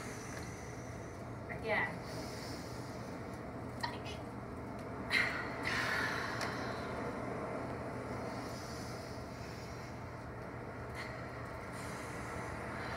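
People breathing out hard after a held breath in a children's breathing exercise: a long, noisy exhale about five seconds in, with a couple of shorter breathy puffs before it, over a steady low background hiss.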